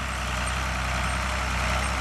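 John Deere farm tractor's engine running steadily under load as it pulls a corn planter across the field.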